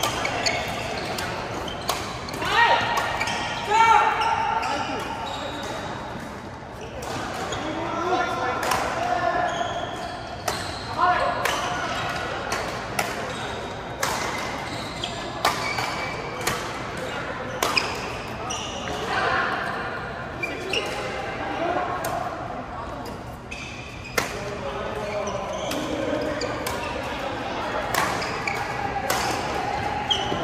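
Badminton rackets striking a shuttlecock in doubles rallies: sharp cracks, often about a second apart, echoing in a large indoor hall. Players' voices come and go between the hits.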